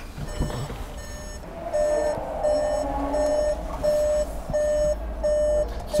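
A car's electronic warning chime beeping at an even pace, about one and a half beeps a second, starting a couple of seconds in.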